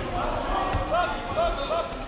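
Overlapping voices calling out in a large sports hall, with several dull thuds from kickboxers' strikes and footwork on the mats.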